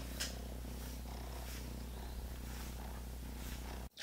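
A kitten purring, held in the arms: a faint, low, steady purr that cuts off suddenly near the end.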